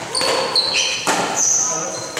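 Court shoes squeaking on a wooden sports-hall floor during a badminton rally: several short, high squeaks, with two sharp knocks of rackets striking the shuttlecock or feet landing.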